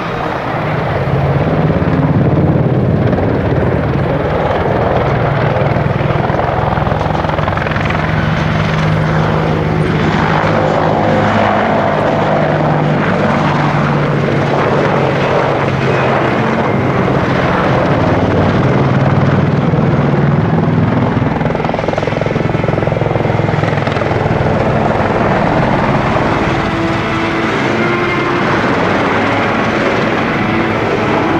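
AH-64D Apache attack helicopter flying low and banking over the field, a loud, steady rotor-and-turbine noise. Its low hum shifts in pitch as it moves past and turns.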